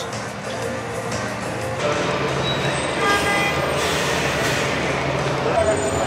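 Road traffic with a large vehicle's engine running, under background music; the noise swells about two seconds in.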